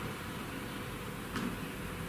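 Steady low room noise, a faint even hiss and hum, with one faint click about one and a half seconds in.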